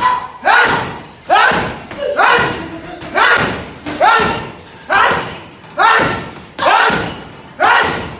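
Boxing gloves hitting a water-filled teardrop punch bag about once a second, each blow a sharp slap with a ringing tail that dies away before the next.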